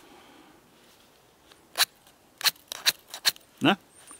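Miniature ferrocerium fire steel built into a Victorinox pocket knife, scraped in five quick, sharp strokes in the second half, striking sparks.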